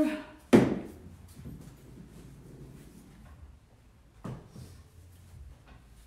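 A sharp knock of a hard object against wooden furniture about half a second in, and a softer knock about four seconds in.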